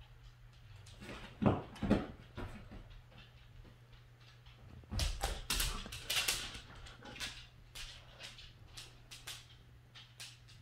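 Husky dogs moving about and playing: two thumps about a second and a half in, then a burst of scuffling and clicking noises around five to six and a half seconds in, with a brief dog whine among them.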